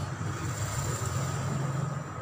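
A steady, low engine rumble, like a motor vehicle running or passing close by.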